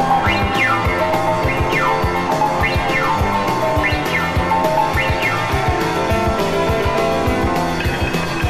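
Live rock-and-roll band with piano and drums playing an instrumental break, without singing. A falling run repeats about once a second over a steady drum beat.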